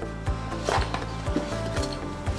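Background music with a steady beat, over the rustle and scrape of a cardboard test-strip box being opened by hand, loudest briefly under a second in.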